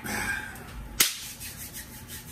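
One sharp hand clap about halfway through.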